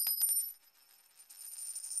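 End-card sound effect: a bright, high metallic jingle with a few sharp clicks that fades out within about half a second, then a high hiss that swells up near the end.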